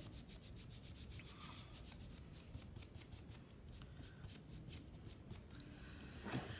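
A nearly dry paintbrush scrubbed quickly back and forth over a wooden block, dry-brushing paint on: faint, even scratchy strokes at about five or six a second, stopping shortly before the end.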